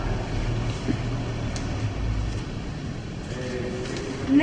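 Steady low rumble of background noise in a room, with one faint click about one and a half seconds in.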